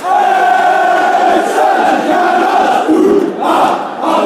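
A crowd of football fans singing a terrace chant together in unison, holding long notes, with a short break and a rising note about three and a half seconds in.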